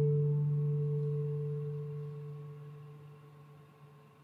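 Last acoustic guitar chord ringing out, its low notes fading steadily away to near silence by the end.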